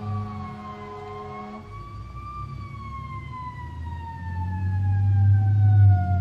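Emergency vehicle siren wailing: one long tone that rises briefly, then slides slowly down in pitch, with a low rumble swelling in the second half.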